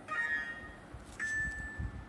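Chime-like ringing tones: a cluster of bright notes struck at the start that die away within a second, then a single clear note about a second later that rings on.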